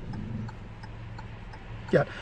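Inside a stopped car's cabin: a steady low engine hum, with light ticking repeating evenly about three times a second.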